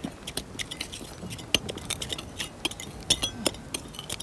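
Irregular small clinks and scrapes of metal hand tools working loose, gravelly soil during hand excavation of bone.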